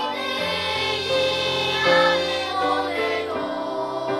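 Children's choir singing in unison and harmony, holding notes of about a second each as the melody moves, with low sustained notes beneath the voices.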